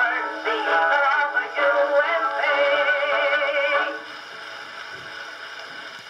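Edison Blue Amberol cylinder record playing on an Edison cylinder phonograph: the singer and band hold the song's final note with a wavering vibrato, which ends about four seconds in. Only the faint hiss of the cylinder's surface noise is left after it.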